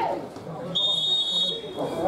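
Referee's whistle: one short blast, a steady high tone about three-quarters of a second long, blown to stop play for a foul after a player is brought down. Players' shouts are heard around it.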